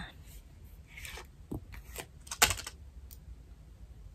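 A few soft clicks and rustles of small objects being handled and picked up, the loudest a pair of clicks about two and a half seconds in.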